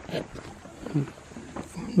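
A few faint, brief murmurs of a person's voice, short sounds spread across the two seconds between louder talk.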